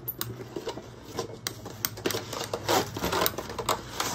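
Metal zipper on a stiff leather bag being unzipped in short, uneven pulls: a run of small clicks, with a denser rasp about two and a half seconds in, along with the knocks of the bag being handled.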